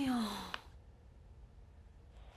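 A person's voiced sigh, falling in pitch over about half a second at the start, followed by a small click and then quiet room tone.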